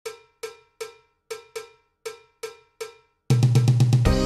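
Intro music opening with eight sharp, ringing metallic percussion hits, like a cowbell, spaced unevenly about half a second apart. Just before the end, loud music with a deep bass comes in.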